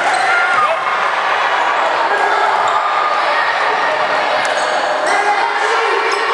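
Basketball game in a gymnasium: a ball bouncing on the hardwood court amid spectators' steady chatter and shouting, with a few sharp clicks.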